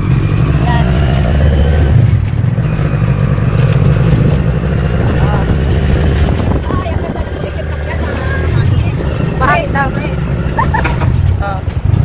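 Small engine of a kuliglig, a motorised pedicab-style cart, running steadily while being ridden in traffic, its low drone heard from on board. Brief voices come in near the end.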